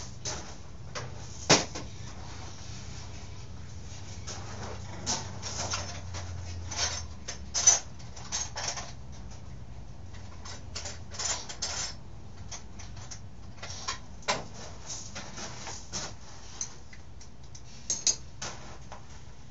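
Irregular clicks, clinks and light knocks of small parts and tools being handled during a dirt bike teardown, over a steady low hum. The sharpest knocks come about a second and a half in and again near eight seconds.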